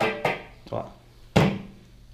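Two sharp pops through the amplifier speaker, each trailing a short ringing guitar tone, the second louder, about a second and a half in, as the guitar cable is pulled from the input jack of a Boss ME-70 multi-effects pedal. Unplugging that jack is what switches the unit off.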